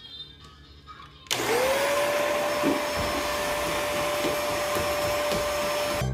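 Vacuum cleaner switched on about a second in: its motor whine rises quickly, then holds steady with a loud rush of air as it runs.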